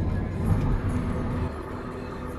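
Car interior road noise while driving on a highway: a steady low rumble of tyres and engine, a little louder for the first second and a half.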